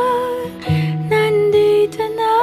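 Background music: a slow, tender song with a held sung note, then a few changing notes over guitar.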